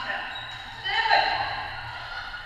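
Indoor floorball game: players calling out over the knocks of sticks, ball and shoes on the court, with one loud cry about a second in.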